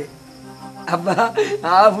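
Crickets chirping under a held background-music chord, then a man's voice speaking from about a second in.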